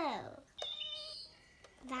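A long meow-like cry that slides steeply down in pitch and dies away about half a second in, followed by faint high steady tones.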